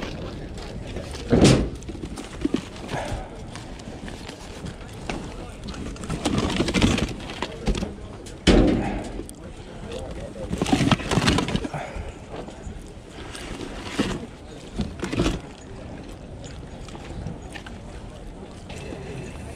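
Hands rummaging through a cardboard box of plastic household goods: rustling and clattering, with sharp knocks about a second and a half in and again about eight and a half seconds in. People talk in the background.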